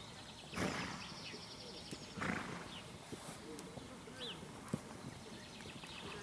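A ridden dressage horse snorting twice, two short breathy blasts about a second and a half apart, over faint background chatter.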